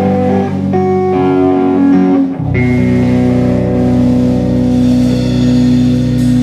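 Live rock band with electric guitar, bass guitar and keyboard. Over the first couple of seconds a few single notes are held. About two and a half seconds in, the band lands on one long held chord over a deep bass note and lets it ring: the song's closing chord.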